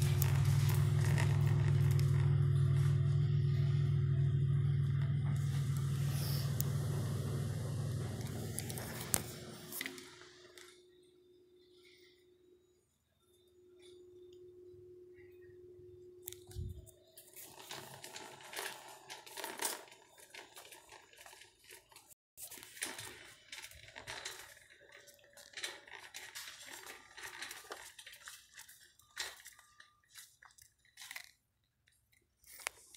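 A loud low rumble fades away over the first ten seconds. After a quiet stretch, goods are handled in a shopping cart near the end: rustling of fabric and packaging with many light clicks and knocks.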